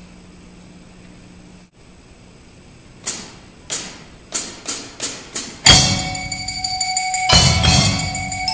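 Low room hum for about three seconds, then six drumstick clicks counting the band in, two slow and four quicker. The percussion ensemble then comes in loud together: drum kit with cymbal crash, marimba, xylophone, vibraphone, bells and bass guitar playing a metal-song arrangement.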